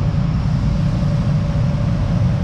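A steady low rumble with a faint, constant hum above it, unchanging throughout.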